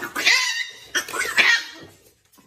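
A cat giving two drawn-out meowing calls in a row, each about two-thirds of a second long, with a wavering pitch.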